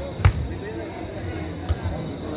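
A football struck twice during footvolley play: a sharp, loud thud about a quarter second in and a softer one near the end, over crowd chatter.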